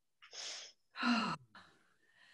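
A person sighing: a short breathy intake, then a voiced exhale that falls in pitch.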